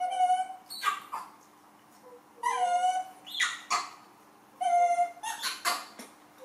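A young macaque crying: three whining calls of under a second each, the middle one bending up and down in pitch, with short sharp cries in between.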